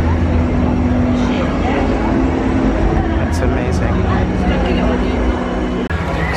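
Loud exhibition-hall ambience: a steady low rumble with a few held low tones that shift in pitch every second or two, and voices in the background.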